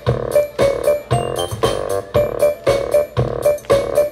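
Live techno-pop band playing an instrumental passage: a drum kit keeps a steady beat, about two strong hits a second, under short, repeated keyboard or synthesizer notes.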